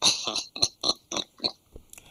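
A man laughing in short breathy bursts, about four a second, cut off suddenly near the end.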